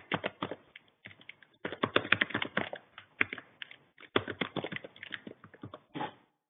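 Typing on a computer keyboard: quick runs of key clicks with short pauses between them, one near the start and a briefer one about four seconds in.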